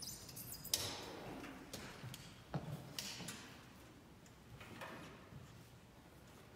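Faint handling noise of tubas and euphoniums being lifted into playing position: a scatter of soft clicks and knocks, the sharpest about three quarters of a second in and again around two and a half and three seconds, with faint rustling between.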